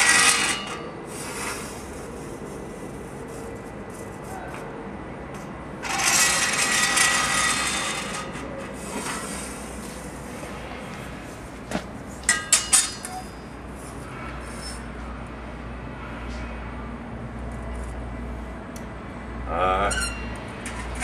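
Steel square and rule knocking and scraping on the ground steel face of an anvil as it is checked for flatness. There is a sharp clink at the start, a rough scraping rub of about two seconds a little before halfway, and a quick run of light metallic clicks a little after halfway.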